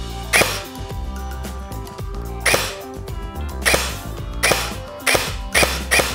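G&G GC16 Predator airsoft electric gun (AEG) firing six single shots at irregular intervals, each a short sharp crack, as its electronic ETU trigger is pulled. Background music plays throughout.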